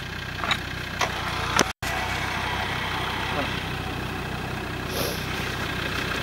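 Land Rover Defender off-roader's engine idling steadily while stuck in mud on a winch line, with a few faint clicks early and a very brief dropout in the sound just under two seconds in.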